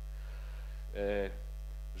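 Steady electrical mains hum, with a short voiced 'e' of hesitation from a man's voice about a second in.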